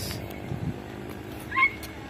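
A short animal call, a meow-like cry rising in pitch and then held briefly, about a second and a half in, over faint steady background noise.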